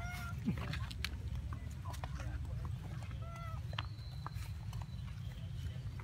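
Two short, high squeaky calls from a young long-tailed macaque, one right at the start and another about three seconds later, over a steady low rumble.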